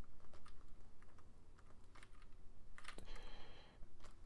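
A few faint, spaced-out computer keyboard key clicks, with a brief faint high-pitched whine late on.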